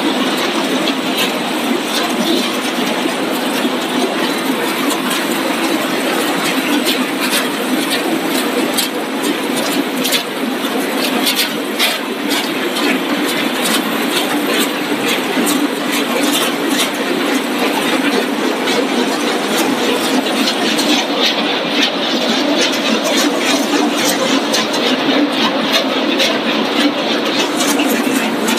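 Tortilla-chip production line running: a steady mechanical hum from the conveyors and machinery, with constant small clicks and rattles of chips moving along the conveyors and chutes.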